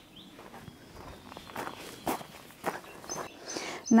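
A handful of unhurried footsteps on a gravel path, each step a short crunch, with faint bird chirps near the end.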